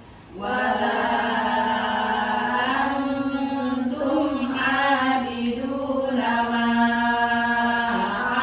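Group of women's voices chanting a Quran recitation in unison, with long held notes that step slowly in pitch. A brief breath pause falls right at the start.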